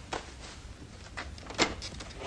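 Wooden plank door being unlatched and opened, a series of short wooden clacks and knocks from the latch and boards, the loudest about one and a half seconds in.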